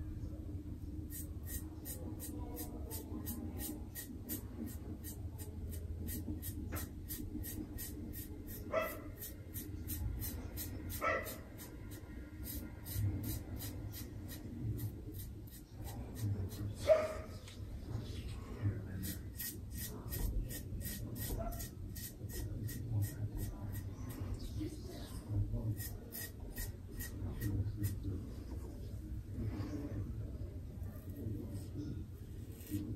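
Quick, evenly repeated short scraping strokes of a Karve CB double-edge safety razor across a lathered scalp on the final pass, in runs with pauses. A few short pitched yelps cut in, the loudest about halfway through.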